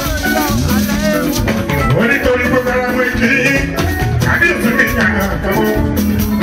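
Live Fuji music: a man singing into a microphone over a band of drums and shakers keeping a regular beat.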